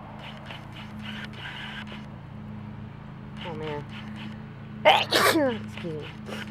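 A woman sneezes once, loudly, about five seconds in, a sudden burst trailing into a falling voiced tail. A short vocal sound comes just before it, and a steady low hum runs underneath.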